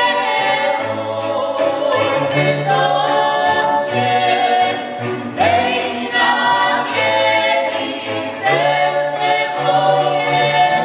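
Polish highlander (góral) string band: violins and a bowed folk bass (basy) playing while the musicians sing together in full voice. New sung phrases start about five and a half and eight and a half seconds in, over a sustained low bass line.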